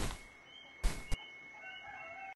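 Faint outdoor ambience with a short burst about a second in, then faint chicken calls near the end.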